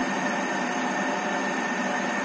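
Prestige 1.5-litre stainless-steel electric kettle heating water: a steady rushing hiss as the water works towards the boil.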